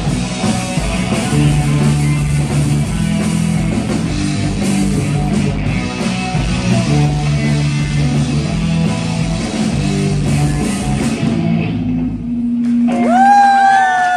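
Live rock band with electric bass, electric guitars and a drum kit, playing the closing bars of a song. About twelve seconds in the band stops and one low note is held, with sliding high tones over it near the end.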